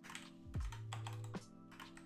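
Computer keyboard typing in short clicks over lo-fi hip-hop background music with held chords and a steady kick-drum beat.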